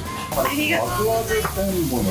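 Meat sizzling on a hot cast-iron serving plate. The steady hiss starts about a third of a second in.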